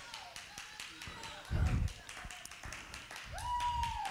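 Scattered hand clapping from a church congregation, many quick irregular claps, with a few faint voices calling out.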